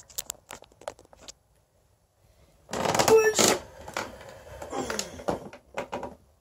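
Handling noise from a camera being turned by hand: a few light clicks, a short pause, then loud rubbing and scraping against the microphone for about three seconds before it dies away.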